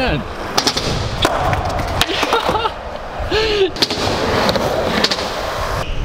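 Skateboard wheels rolling steadily over skatepark ramps, broken by several sharp clacks of the board hitting the ramp.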